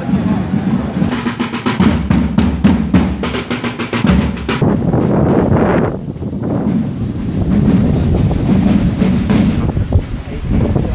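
Marching drums beating a rhythm, with a quick run of sharp, evenly spaced strokes from about two to four and a half seconds in.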